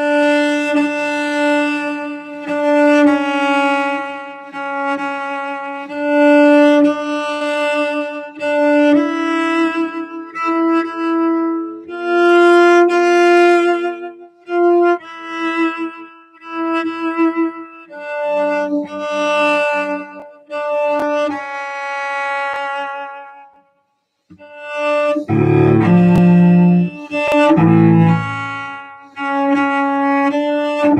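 Solo cello played with the bow: a Baroque piece from the viola da gamba repertoire, in phrases of sustained notes in the middle register. There is a brief pause a little over two-thirds through, followed by lower, fuller notes with two or more pitches sounding together.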